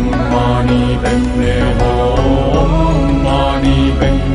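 Mantra chanting set to music, with sung lines over a steady low drone.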